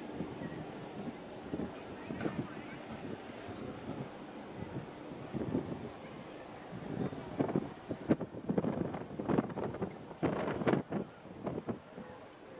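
Wind buffeting the microphone in uneven gusts over a steady rush. The gusts grow stronger and more frequent through the second half.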